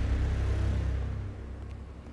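Soundtrack of an animated scene: a deep rumble that hit suddenly just before and fades away slowly, under ominous music.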